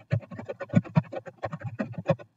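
Fast typing on a computer keyboard: a dense, uneven run of key clicks, close to the microphone.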